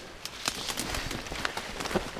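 Light, irregular ticking and rustling of a person walking through wet undergrowth: drops, brush and rain-jacket fabric.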